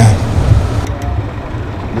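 Low, steady rumble of a Toyota school bus engine idling.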